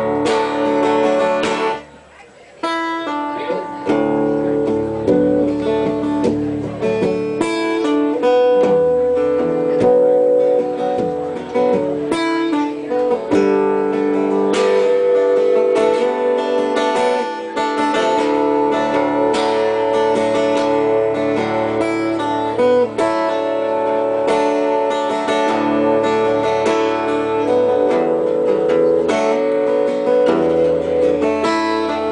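Acoustic guitar strummed in a live solo performance, with a short break in the playing about two seconds in before the strumming picks up again.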